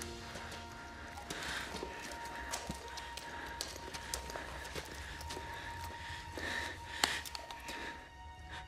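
Quiet, dark cave ambience: a faint steady tone under scattered small clicks and drip-like ticks, with one sharper click about seven seconds in.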